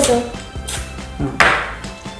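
Two sharp plastic knocks from the toy board game being handled on the table, the second one louder, over quiet background music.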